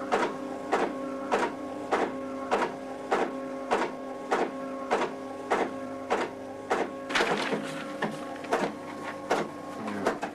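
Small computer printer printing out an individual cow record. Each stroke is sharp and comes about every 0.6 s over a steady motor hum, with a denser rattle about seven seconds in.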